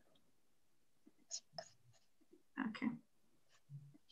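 Mostly quiet call audio with a few faint short noises, and a softly spoken "okay" about two and a half seconds in.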